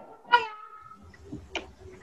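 A short high-pitched call about a third of a second in, dropping in pitch and then held briefly, followed by a faint click a little past the middle.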